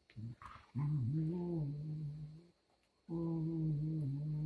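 Dogs play-wrestling, with a long, low, steady play growl. There are two drawn-out growls of about two seconds each, the first starting just under a second in, the second about three seconds in, with a short quiet gap between them. A few soft snuffles come before the first growl.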